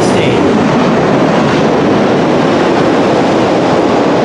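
Steady, loud rushing noise with no rhythm or pitch: the same background noise that runs under the talk on either side, with no speech on top of it.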